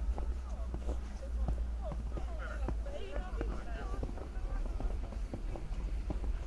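Footsteps crunching in snow at a steady walking pace, about two steps a second, with people's voices talking in the background in the middle of the stretch and a steady low rumble underneath.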